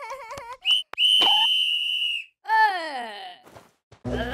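Cartoon sound effects: a brief wavering, giggle-like character vocal, then a long steady high whistle lasting about a second, followed by a falling glide in pitch.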